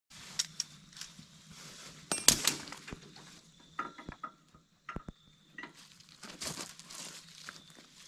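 Scattered light metallic clinks and knocks from gear being handled on a metal utility trailer, the loudest a short clatter a couple of seconds in, with footsteps on gravel and dry leaves.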